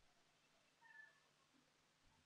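Near silence with faint room hiss; one faint, short animal call about a second in.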